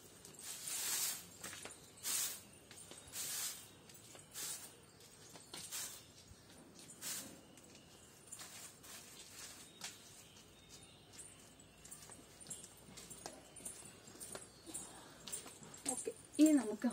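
Stick broom of coconut-leaf ribs sweeping dry leaves on a paved path: short scratchy strokes about one a second, strongest in the first few seconds and growing fainter later.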